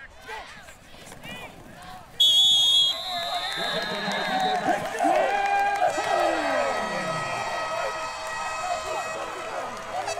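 A referee's whistle blows one sharp, high blast about two seconds in and fades over the next two seconds. After it, crowd voices shout and cheer from the stands.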